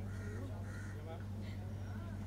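A crow cawing twice in quick succession within the first second, over a steady low hum and faint background voices.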